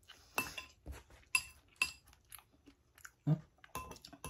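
A metal utensil clinking against a glass bowl: several sharp clinks, three of them ringing briefly. Quiet chewing comes between the clinks.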